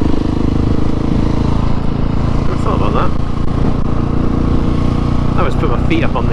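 Husqvarna 701 Supermoto's single-cylinder four-stroke engine running at a steady cruising speed, heard on board from the rider's helmet camera.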